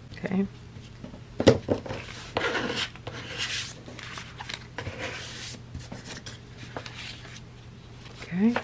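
Hands and a plastic card rubbing and scraping over glued fabric and paper on a tabletop, with irregular clicks and knocks as the piece is handled and turned over, the sharpest about one and a half seconds in.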